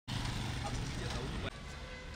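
A motor vehicle's engine running close by, with voices mixed in. It cuts off abruptly about one and a half seconds in, leaving quieter outdoor background noise.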